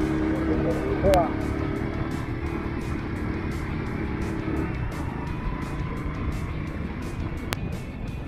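Motorcycle engine running as it climbs a bumpy dirt trail; the engine note drops away about halfway through. Background music with a quick steady beat plays underneath.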